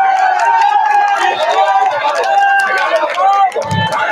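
A man's voice speaking loudly and without pause into a microphone over a public-address system, with a short low thump near the end.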